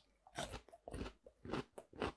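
Close-miked chewing of a raw air-potato (aerial yam) slice dipped in honey: a run of short, soft crunches at an uneven pace as the firm, radish-like flesh is bitten down.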